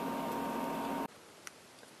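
Steady indoor room tone: an even hiss with a thin, faint high whine and a low hum. It cuts off abruptly about a second in at an edit, leaving near silence broken by one faint click.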